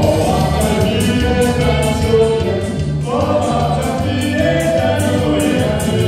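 A live folk dance band playing a popular dance tune over a steady beat, with voices singing new phrases at the start and again about three seconds in.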